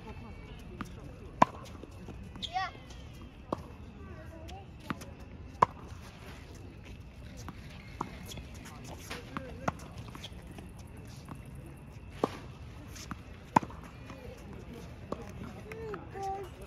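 Tennis balls being struck by rackets and bouncing on a hard court: sharp pops at irregular intervals, about ten in all, a second or a few seconds apart.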